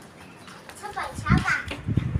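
A small child's voice making short babbling sounds in the middle of the stretch, with a couple of low thumps.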